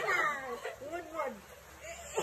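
Young women laughing and squealing in high, wavering voices, dying down after about a second and a half.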